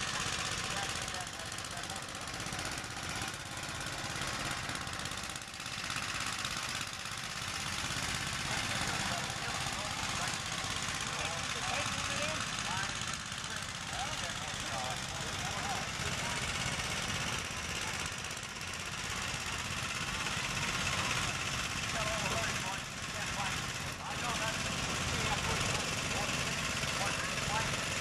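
Small Gravely tractor engine running steadily as a custom Gravely grader works a dirt road, with faint voices in the background.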